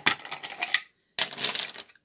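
Plastic markers and pens clattering against each other and the wood of a small painted crate as it is handled. There are two quick runs of clatter with a short silence between them, about a second in.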